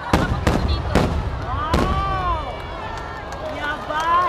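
Aerial firework shells bursting overhead: four sharp booms in the first two seconds, each with a lingering low rumble, which dies down toward the end.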